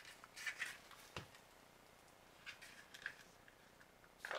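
Faint, brief scratching and crinkling of a foil seal being picked at and torn open on a plastic supplement jar, with one sharp click about a second in.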